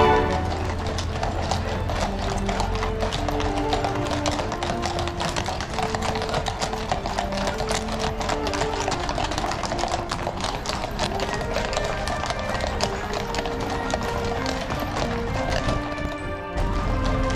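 Horse-drawn carriages passing, the horses' shod hooves clip-clopping on brick paving in a dense run of overlapping clicks, with music playing underneath in held notes.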